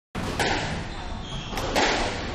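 Squash rally: sharp knocks of the ball off racket and walls, once about half a second in and twice in quick succession near the end, over players' footsteps on the court's wooden floor.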